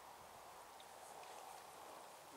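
Near silence: faint outdoor background hiss with no distinct sound.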